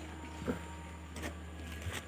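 A steady low hum, with a couple of faint knocks.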